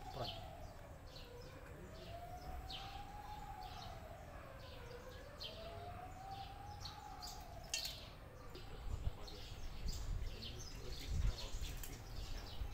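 A siren wailing, its pitch sliding slowly up and down about every four seconds and fading out about eight seconds in. Over it, a stream of short crisp crunches from a cat chewing crunchy snack food close by.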